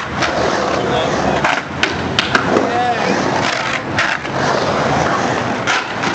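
Skateboard wheels rolling and carving on a concrete bowl, with a few sharp clacks about two seconds in.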